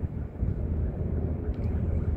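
Wind buffeting the phone's microphone outdoors: an uneven low rumble with no clear tone.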